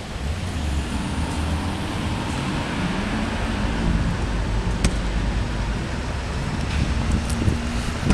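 Steady low rumble of city traffic, with some wind noise on the microphone. A single brief click a little before the five-second mark.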